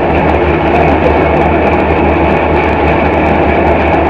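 Large vertical band saw running and cutting through a wooden plank fed by hand: a loud, steady machine noise over a constant low motor hum.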